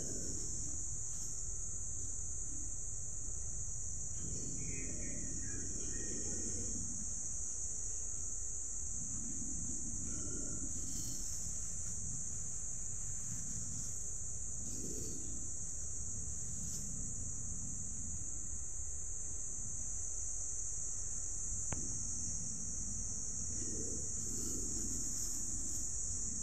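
Steady high-pitched insect chorus of crickets or cicadas, droning without a break. A few soft low rustles come and go, from the clear plastic bags being handled around the fruit.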